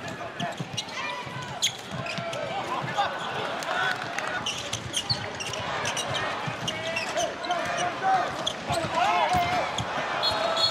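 A handball bouncing on an indoor court floor, with repeated short thuds, while shoes squeak on the court and players' voices carry over the arena crowd.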